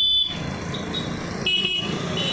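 Motorcycles and scooters passing close by, their engines running low, with short high-pitched electronic beeps: the loudest right at the start, and another pair about a second and a half in.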